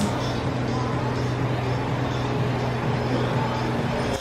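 A steady low hum over a faint even hiss, unchanging throughout.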